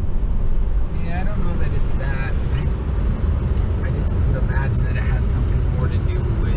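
Steady low road and engine rumble inside the cabin of a moving Toyota pickup, with quiet talk over it.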